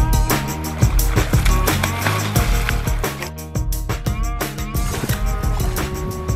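Background music with a driving drum beat and heavy bass.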